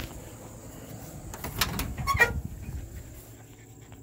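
An old car's door being opened and handled: a few sharp clicks and knocks about one and a half to two seconds in, with a short rising squeak among them.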